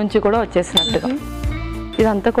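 A metal spoon clinks once against a glass salad bowl just under a second in, a short bright ring, over steady background music and a woman's speech.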